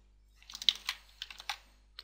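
Computer keyboard keys being pressed: a short run of separate light key taps.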